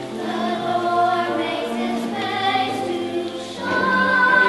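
Girls' and young women's choir singing a slow choral piece, several voice parts holding long notes together; the singing swells louder near the end.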